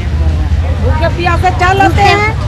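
People talking close to the microphone, mostly in the second half, over a steady low rumble.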